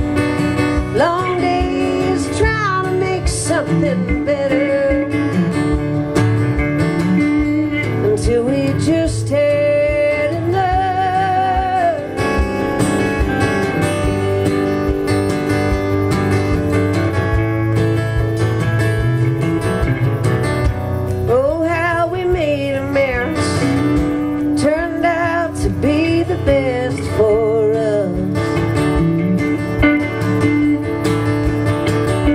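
Live instrumental break: an electric guitar plays a lead solo with bent, wavering notes over a strummed acoustic guitar.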